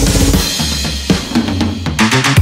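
Background music: an electronic track with drum kit and bass. It thins out to a low bass line and a few scattered drum hits about half a second in.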